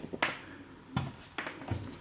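A few light knocks and clicks of a plastic power strip and its cable being handled and set down on a wooden floor.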